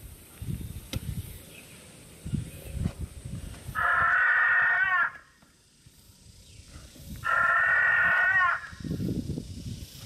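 Two recorded velociraptor calls, each over a second long with a wavering end, played by the dinosaur costume's built-in sound system. Softer low thuds come before and after the calls.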